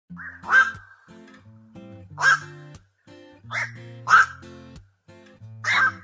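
Black-crowned night herons giving five short, loud calls, spaced about one to two seconds apart, over background music.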